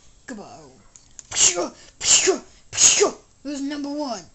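A person's voice making three loud, breathy outbursts about two-thirds of a second apart, each falling in pitch, followed near the end by a held voiced tone.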